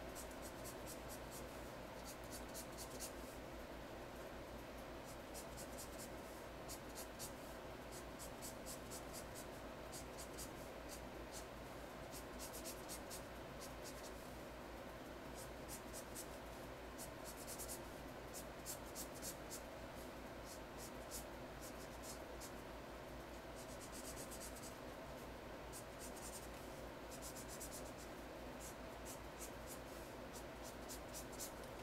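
Felt-tip marker scratching faintly on paper as letters are colored in, in runs of quick back-and-forth strokes broken by short pauses.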